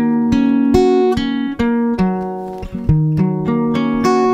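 Acoustic guitar fingerpicked, in an open alternate tuning (E G# B F# B Eb) with a capo at the seventh fret: one chord shape (four-three-four on the bottom three strings, the rest open) arpeggiated back and forth up to the B string. Single notes are picked one after another, two or three a second, and ring over each other.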